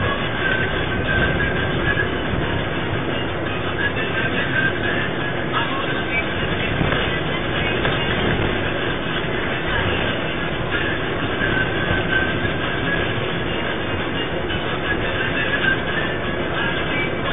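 Steady rumble and rattle of a moving passenger bus, picked up by its interior security-camera microphone, with music playing underneath.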